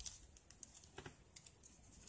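Faint, scattered little clicks and crinkles of thin holographic nail-art transfer foil strips being handled and leafed through by fingers, with one slightly stronger crackle about a second in.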